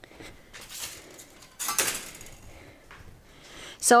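Small offcuts of thin sheet steel clinking and rustling as they are handled, with a short clatter just under a second in and a louder one near the two-second mark.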